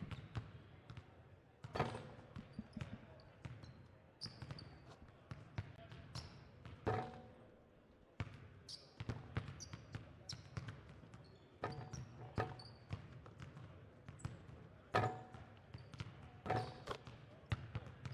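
Basketballs bouncing on a hardwood gym floor during warm-ups: irregular thuds from several balls, with short high squeaks of sneakers and a murmur of voices in the large hall.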